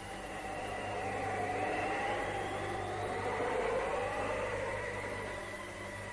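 An eerie wavering whine that slowly glides up and down in pitch and swells in the middle, over a steady low hum.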